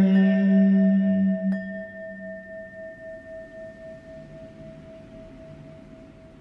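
A held sung note of Buddhist chanting dies away. About a second and a half in, a bowl bell is struck once and rings on, slowly fading.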